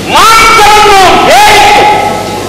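A Yakshagana performer in the demoness role of Shoorpanakha gives two loud, drawn-out shrieking cries. Each swoops up and then holds a high pitch; the second starts just after a second in.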